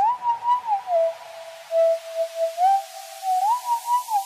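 A single pure, whistle-like tone plays a slow melody, sliding smoothly between a few notes and swelling and fading in short pulses. It is the intro of a piece of music before the beat comes in.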